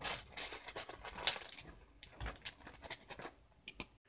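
Faint handling sounds of small tools and parts being picked up and set down on a workbench, with a small plastic bag crinkling: a scatter of light clicks and rustles.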